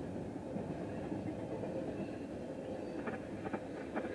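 Double-stack intermodal freight train rolling past, its wheels on the rails giving a steady rumble.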